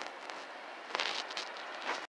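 Faint steady outdoor hiss with a few soft clicks and crackles about a second in, like light handling of a handheld camera.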